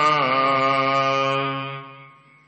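A man's voice chanting Gurbani in melodic recitation, holding out the last note of a line. The note dips slightly in pitch early on, then fades out near the end.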